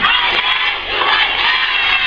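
A large crowd of women and children shouting together in high voices, many voices overlapping, with a brief lull just under a second in.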